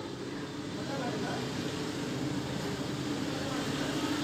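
Steady background rumble and hiss, with faint voices in the background.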